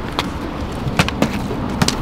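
Plastic water bottles being flipped and knocking down onto brick paving: about four sharp knocks spread over two seconds, over a steady low outdoor rumble.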